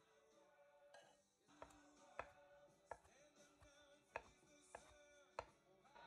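Kitchen knife chopping crispy bacon on a wooden cutting board: about six sharp knocks of the blade on the board, spaced half a second to a second apart.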